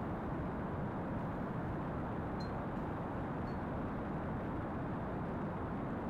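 Steady low rushing background noise with no distinct tones or events, holding an even level throughout.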